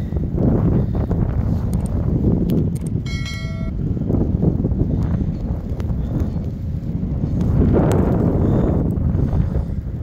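Wind buffeting the microphone in loud, uneven gusts during a snowstorm, a low rumbling noise. About three seconds in there is a short high beep.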